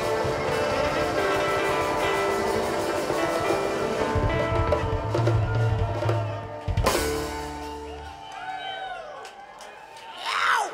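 Live string band with drum kit, upright bass and guitars playing the last bars of a song, closing on one sharp full-band hit about seven seconds in and letting it ring out. After that the crowd cheers and whoops.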